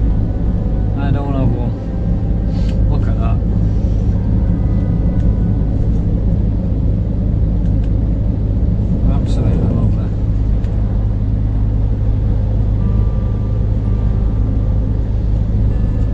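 Inside a Scania lorry's cab: a steady low engine drone and road rumble as the truck cruises at a constant speed, set to 40 mph.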